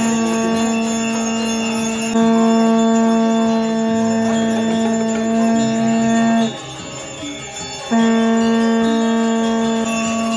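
Conch shells blown in long, steady, horn-like notes, the first held for about six seconds and the second starting again after a short break, over bells jingling continuously.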